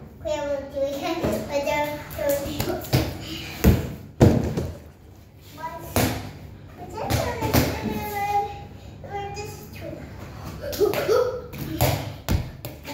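Young children's voices chattering and calling out, with a few sharp thumps in between, the loudest pair about four seconds in.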